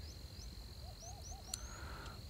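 Faint field ambience: a steady high-pitched insect trill throughout, with a few short rising bird chirps and a run of four soft, low bird notes about a second in.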